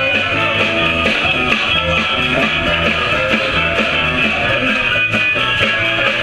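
Live blues band playing an instrumental stretch, guitar to the fore over bass and a steady drum beat.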